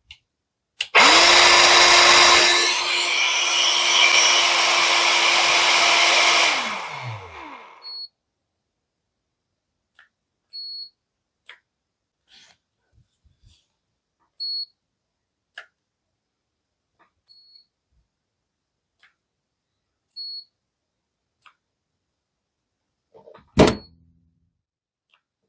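Parkside PALP 20 A1 cordless air pump blowing at full speed for about six seconds, then its motor winds down and stops, the 2Ah battery being spent. After it come five short high electronic beeps a few seconds apart, and a sharp clack near the end.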